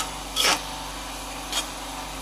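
A spoon scraping across a honeycomb-textured frying pan as a thick sauce is stirred: three short scrapes, two close together at the start and one about a second and a half in.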